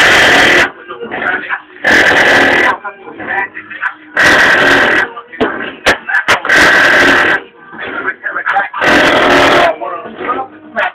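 Music played loud on a car stereo through a Resonant Engineering SE 15-inch subwoofer. On each heavy bass hit, about every two seconds, the sound swells into a loud, distorted blast, with quieter voice-like sound in between.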